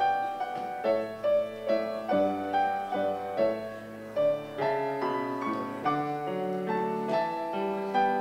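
Solo keyboard music: a slow, chordal prelude-style piece, with notes and chords struck about once or twice a second, each fading after it sounds.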